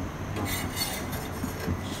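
A metal spatula scraping under a chapati and lifting it on a hot iron tawa, a few light scrapes over a steady low hum.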